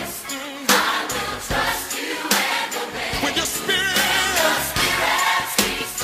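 Recorded gospel song playing: sung vocals with choir-style backing over a steady beat.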